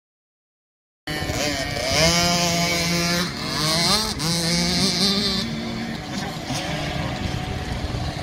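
Small 50cc two-stroke motocross bikes riding a dirt track, their engines revving up and down, with several engine pitches overlapping. The sound cuts in suddenly about a second in, after total silence.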